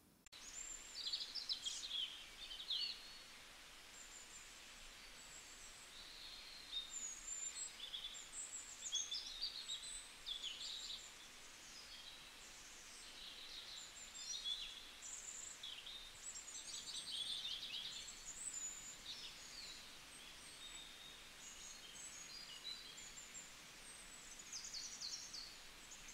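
Small birds chirping and twittering faintly, in many short high-pitched calls and quick trills scattered throughout.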